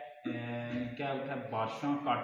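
A man's voice speaking. A brief break just after the start is followed by one long drawn-out vowel held on a steady pitch, and then ordinary speech resumes.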